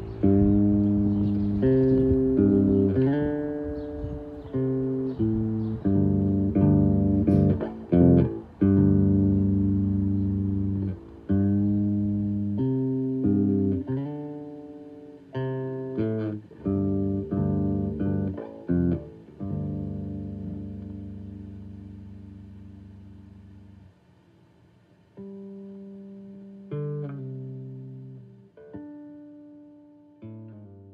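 Background music on a plucked guitar: notes and chords struck one after another, each ringing out and decaying. It thins to a few long sustained notes in the last third, with a brief near-quiet gap about two-thirds of the way through.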